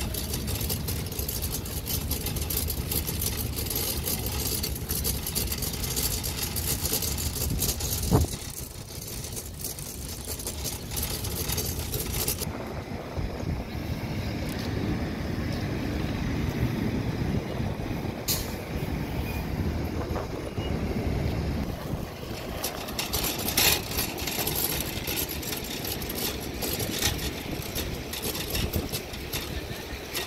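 Road traffic at an airport terminal curb: vehicles running and passing, with a sharp knock about eight seconds in and a few short hisses later on.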